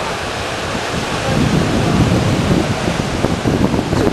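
Steady rush of surf breaking on a rocky shore, with wind buffeting the microphone; the wind rumble grows heavier about a second in.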